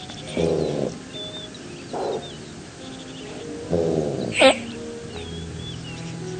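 Background music under animal calls: two drawn-out calls that fall in pitch, about half a second and about four seconds in, a shorter fainter one near two seconds, and a short sharp high call just after the second long call, with small high bird-like chirps in between.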